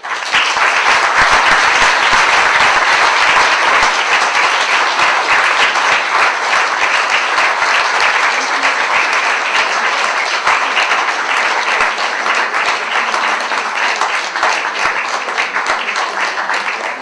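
Audience applauding: dense clapping that starts suddenly, carries on steadily, and eases slightly near the end.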